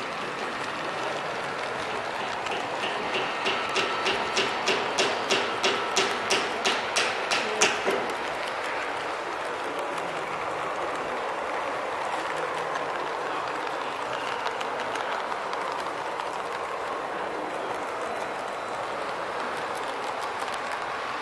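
HO-scale model passenger cars rolling past on the track, their wheels clicking over the rails about three times a second for several seconds, the clicks growing louder and then stopping, over the steady background noise of a busy exhibition hall.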